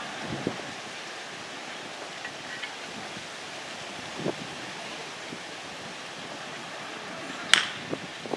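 Steady wind noise on the microphone, then, about seven and a half seconds in, a single sharp crack of a bat hitting a pitched baseball.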